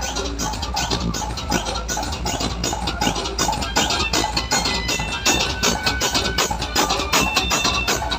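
Loud DJ dance music from a large sound system: a fast, even beat over heavy bass, with held synth notes coming in after about three seconds.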